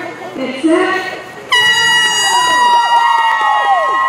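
Air horn sounding the start of a footrace: a sudden, steady blast that begins about a second and a half in and holds on, after a voice calling out.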